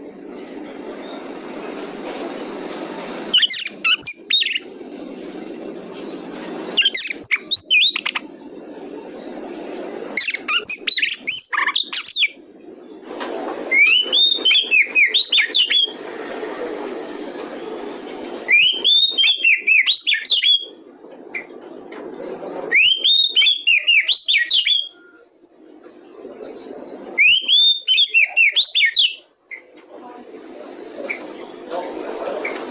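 Oriental magpie-robin (kacer) singing in seven bursts of rapid, rich, sweeping whistled phrases, a few seconds apart, with steady background noise in the gaps.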